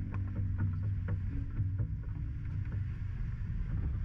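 Off-road 4x4 crawling along a rocky dirt trail: a low, steady engine and drivetrain rumble with frequent short knocks and creaks from tyres on stones and the body and suspension working over the bumps.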